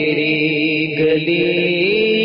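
Devotional Urdu singing (a na'at), one voice holding long drawn-out notes that step down in pitch about a second in and rise again near the end.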